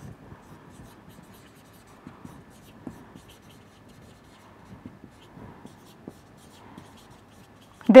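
Marker pen writing on a whiteboard: faint, scratchy strokes with a few light taps.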